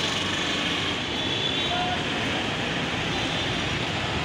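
Steady, even noise of city street traffic.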